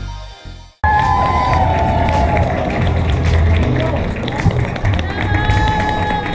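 Background music with a beat that cuts off abruptly under a second in. It is followed by the busy sound of a crowd talking, with music playing over it.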